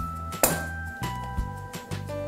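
A sharp metallic clink about half a second in, as a halved orange is set down on a stainless-steel hand citrus juicer, followed by a few faint ticks as it is pressed onto the reamer. Background music plays throughout.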